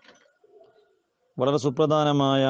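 A pause, then a man's voice comes in about two-thirds of the way through, speaking in long drawn-out tones.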